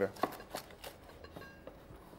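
A large kitchen knife cutting down through a bread-roll steak sandwich on a wooden chopping board. It makes a few short cutting strokes about a third of a second apart, fading after the first second.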